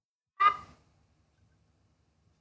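A single short, loud horn toot from a cartoon sound effect, starting sharply about half a second in and fading away quickly.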